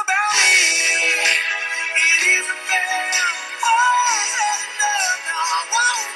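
Music: a pop song carries on without words, a gliding melody line over steady accompaniment.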